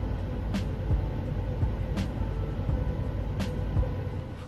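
Steady low rumble of a vehicle engine running close by, with a faint sharp click about half a second, two seconds and three and a half seconds in.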